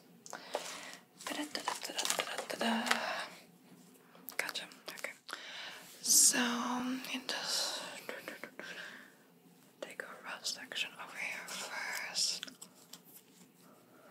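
Soft close-microphone whispering in several short stretches, broken by brief sharp clicks and light handling noises.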